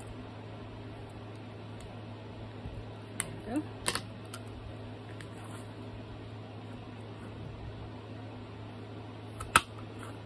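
Metal hand-held hole punch clicking as it is set against and squeezed on a book cover, with a few clicks a few seconds in and one sharp, loud snap near the end as it punches through. A steady low hum runs underneath.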